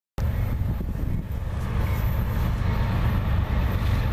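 Wind buffeting the microphone: a steady, heavy low rumble.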